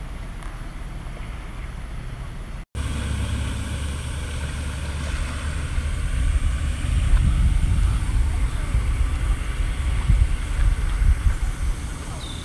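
Wind buffeting the microphone: a low, gusting rumble that starts abruptly after a brief dropout a little under three seconds in and grows louder in the second half.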